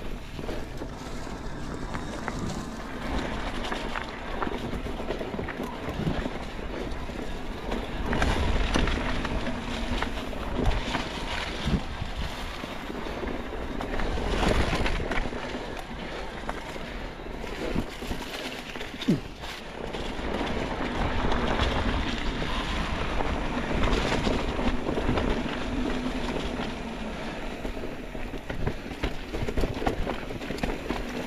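Electric mountain bike ridden fast over leaf-strewn dirt singletrack: tyres rolling through dry leaves, with the bike rattling and knocking over bumps and wind on the microphone. A faint steady hum comes and goes.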